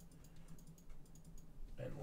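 Typing on a computer keyboard: a quick run of light key clicks, faint, with a voice starting near the end.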